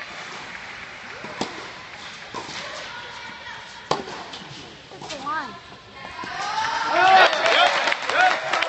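Tennis ball struck by racquets during a rally, two clear sharp hits a couple of seconds apart, then several spectators' voices shouting and cheering near the end, loudest as the point ends.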